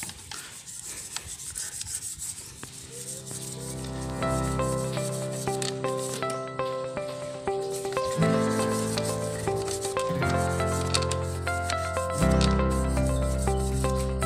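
A small brush scrubbing a motorcycle drive chain and rear sprocket wet with diesel and dishwashing liquid, a scratchy rubbing. From about two seconds in, background music with held chords comes in and grows louder, soon outweighing the brushing.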